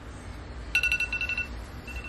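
An iPhone's Clock timer alarm going off as the countdown reaches zero: a fast run of high, evenly repeated beeps a little under a second in, then fainter repeats of the same tone.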